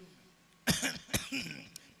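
A man coughing several times in a short run after a brief pause, a staged cough as he plays a dying man.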